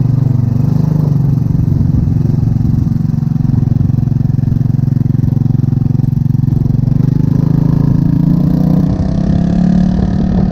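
Single-cylinder four-stroke GY6 150cc scooter engine of a 2007 Jonway moped, running under way with a loud exhaust; its muffler has had washers fitted to make it louder. It runs steadily, with the pitch rising a little near the end.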